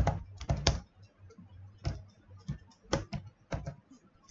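Typing on a computer keyboard: irregular keystrokes, a quick run of several in the first second, then slower, more spaced presses.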